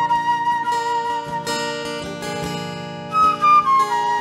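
Silver flute playing a melody over a strummed steel-string acoustic guitar: one long held note, then a short higher phrase about three seconds in that steps back down to the first note.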